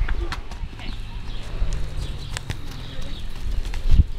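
Hooves of a young Missouri Fox Trotter filly clopping on concrete as she is led at a walk: scattered, irregular sharp strikes.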